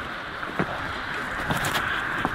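Steady wind and sea noise on granite shore rocks, with a few short scuffs of shoes stepping on the rock.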